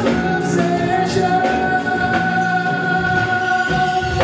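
Live pop-rock band with a male lead singer, backed by drums and bass, and a long steady note held through the second half. Light cymbal ticks keep time.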